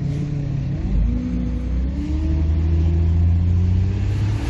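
Ford Windstar minivan's 3.8-litre V6 accelerating under load, heard from inside the cabin; the engine note rises in pitch from about a second in. It pulls strongly, with the intake manifold runner control working again after repair.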